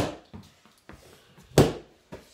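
A training stick striking a handheld pad hard, twice, about a second and a half apart, with a few fainter knocks between the blows.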